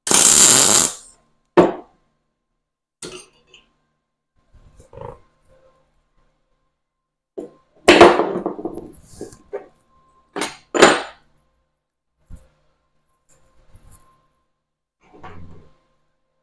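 MIG welder arc running for about a second in one short tack weld joining two small metal pieces, then cutting off. After it come scattered clicks and clanks of locking pliers and metal parts being handled, loudest about eight seconds in and twice near eleven seconds.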